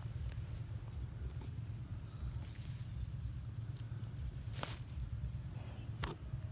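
Quiet outdoor background: a steady low rumble with a few faint scattered clicks.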